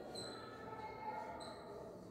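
Whiteboard marker squeaking faintly against the board in a few short strokes as letters are written.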